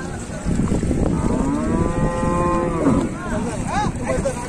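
Cattle mooing: one long, drawn-out moo through the middle, followed by shorter calls near the end, over a steady low rumble.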